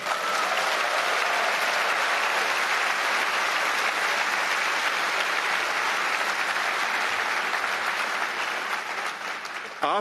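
Large audience applauding, a steady dense clapping that tapers off near the end.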